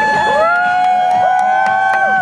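Two overlapping long horn blasts, steady tones that slide up as each starts and down as each stops, with a few sharp clicks over them.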